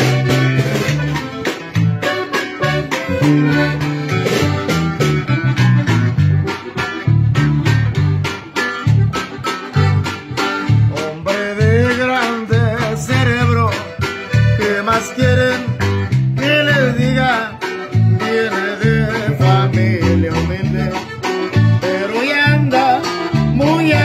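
Amplified acoustic guitar played solo in a cumbia-style rhythm, with strummed and plucked strokes over a bouncing bass line and melodic runs.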